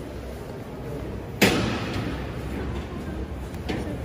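A single loud bang about a second and a half in, fading over about half a second, over a steady murmur of a large stone hall.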